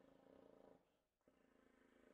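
Near silence: a faint low hum that drops out briefly about a second in.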